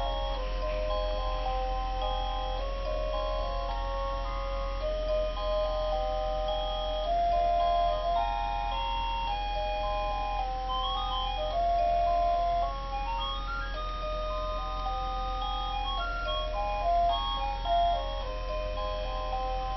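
Baby bouncer's electronic music unit playing a simple melody in plain, beep-like tones, one note after another, over a steady low hum.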